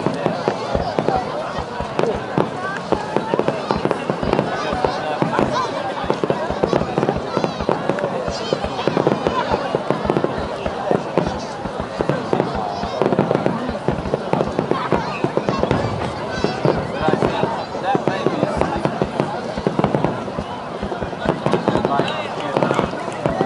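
Distant aerial firework shells bursting again and again, with people talking close by throughout.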